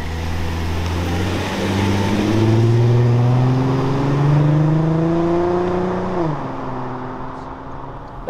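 2005 Porsche Cayenne (955) 3.2-litre V6 accelerating past and away, its engine note climbing steadily in pitch, then dropping sharply about six seconds in as it shifts up a gear. It is loudest in the middle and fades a little as the car draws away.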